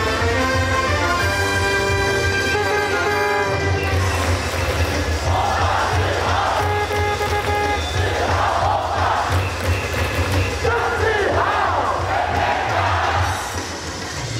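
Stadium PA playing a batter's cheer song with a steady beat and a held melody. From about five seconds in, the crowd chants along in unison in three long swells.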